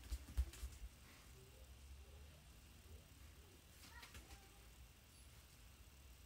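Near silence: quiet room tone, with a few soft bumps and rustles in the first second.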